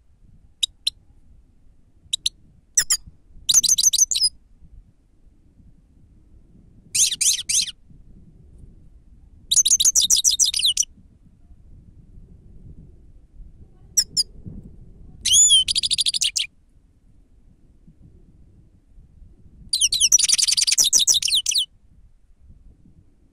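Grey-headed goldfinch singing: a few single sharp call notes, then five bursts of rapid, high twittering song, each one to two seconds long, with pauses of a few seconds between them.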